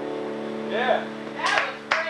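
A held keyboard chord ringing out as a rock song ends, with a couple of cheering voices about a second in and scattered hand clapping starting just before the end.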